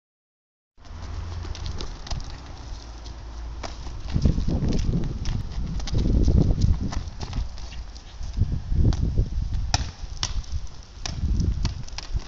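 A football being kicked and bouncing on asphalt: irregular sharp knocks, over a low rumble.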